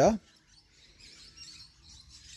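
A spoken word ends, then a mostly quiet pause in which faint light background sounds come and go around the middle.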